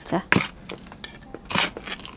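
A spoon scooping gritty, gravelly potting soil into a small pot: scattered small clicks and scrapes, with a louder scrape about one and a half seconds in.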